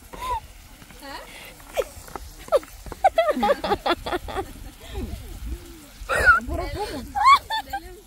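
Voices and a woman laughing in quick, repeated bursts, with a few sharp clicks of a utensil and a faint sizzle of food frying in the pan.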